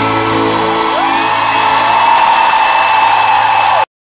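Live band in an arena holding a final sustained chord through the PA, heard through a phone microphone. The chord dies away about a second in as crowd whoops and cheers swell. The sound cuts off abruptly just before the end.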